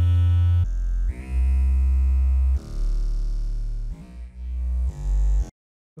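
Playback of a synth bass line with keyboard chords above it, being run through a compressor (Soundgoodizer) on the bass. It plays a few long held low notes that change pitch every second or so, then cuts off suddenly shortly before the end.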